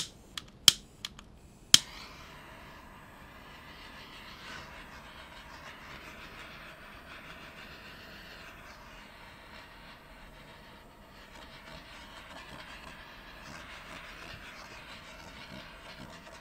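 Small handheld torch: a few sharp clicks of its igniter, then the flame catches about two seconds in and hisses steadily as it is played over wet acrylic paint to pop surface bubbles.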